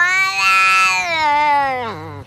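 A domestic cat giving one long, drawn-out, word-like meow that rises at the onset, holds, then slowly falls in pitch and fades near the end.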